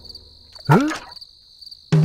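Crickets chirping faintly and regularly, with one short sound rising sharply in pitch about three-quarters of a second in.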